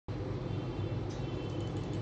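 Steady low background rumble and hum with no distinct events, room or ambient noise.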